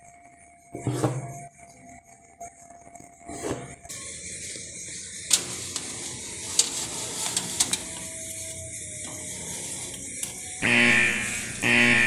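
Aluminium loaf tins clicking and scraping on an oven's wire rack as they are slid in, with music underneath that is louder near the end.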